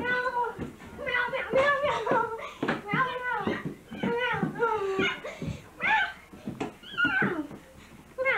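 Children's high-pitched voices, talking or vocalizing in short, sliding phrases throughout.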